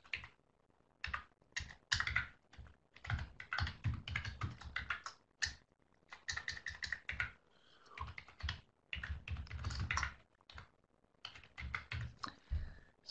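Typing on a computer keyboard: bursts of rapid key clicks separated by short pauses.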